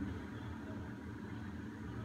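A steady low hum of background noise, with no distinct events.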